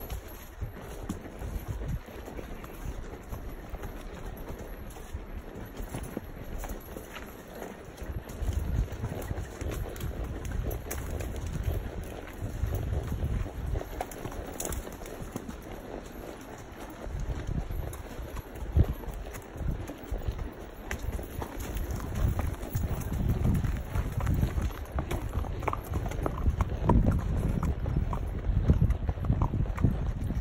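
Mule hooves clip-clopping at a walk on a leaf-covered dirt trail, with stretches of low rumble on the microphone.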